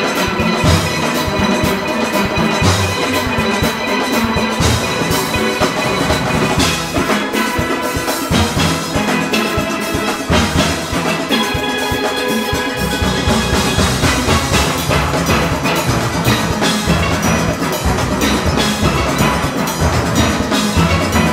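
A full steel orchestra playing an up-tempo Panorama arrangement: massed steel pans over an engine room of drum kit and congas. The deep bass thins out for a few seconds in the middle, then comes back in.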